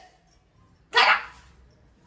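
A single short, loud voice-like call about a second in, then quiet room background.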